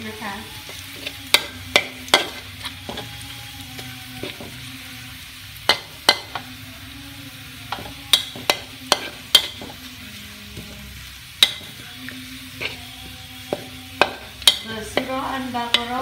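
Metal spatula stirring sliced garlic and shallots frying in a wok, with a soft sizzle underneath. The spatula gives irregular sharp scrapes and clicks against the pan.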